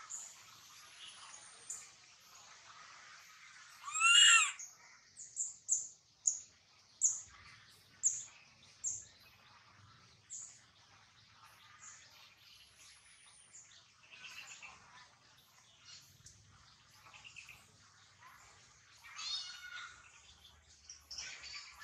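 Animal calls: one loud, high, arching call about four seconds in, followed by a run of short high chirps roughly twice a second, scattered fainter calls, and another high call near the end.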